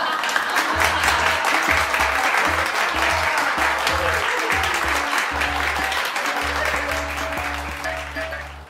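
Applause, a dense patter of many hands clapping, over background music with a stepping bass line that comes in about a second in. Both fade out just after the end.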